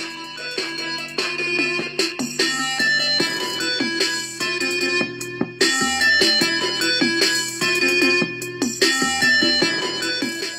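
Music playing through a small 5-watt levitating Bluetooth orb speaker, sounding thin with not much bass.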